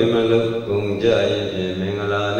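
A Buddhist monk's voice intoning a chant in long, held tones on a fairly steady pitch.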